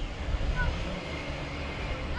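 Wind rumbling on the microphone, swelling in the first second, with a few faint bird chirps.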